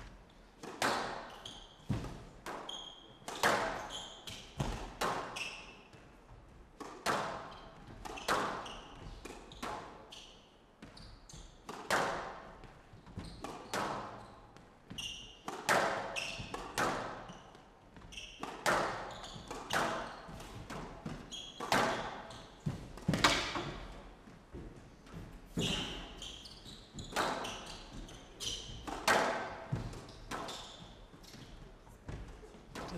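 Squash rally: the ball is struck by rackets and hits the glass court walls roughly once a second, each hit echoing in the hall, with occasional short high shoe squeaks on the court floor.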